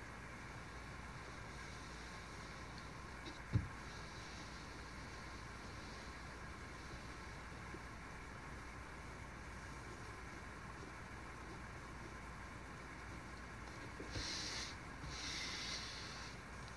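Quiet chip carving: a knife working in the wood over a steady low background hum, with a single sharp thump about three and a half seconds in. Near the end, about two seconds of scraping and rustling as the wooden board is shifted and turned on the towel-covered desk.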